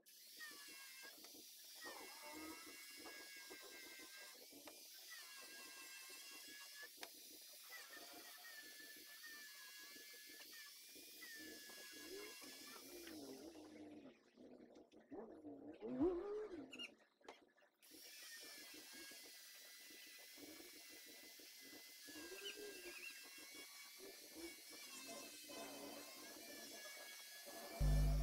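Handheld power drill driving screws into wooden boards, heard faintly: a whine whose pitch rises and falls as the motor speeds up and slows, with a short break a little past the middle.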